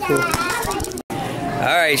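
Children's voices and chatter, with a brief total dropout to silence about halfway through, followed by more voices.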